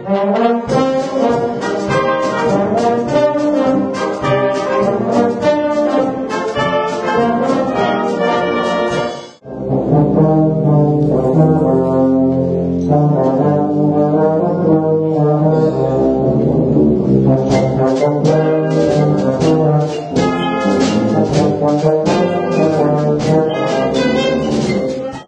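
Brass-heavy wind band playing, with trombones to the fore. About nine seconds in the music breaks off for an instant and comes back on low held chords. Near the end it turns brighter, with short accented notes.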